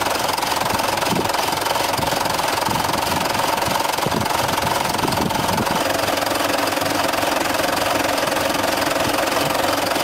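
The twin Fordson Super Major four-cylinder diesel engines of a Doe Triple D tractor running steadily with a hard diesel clatter.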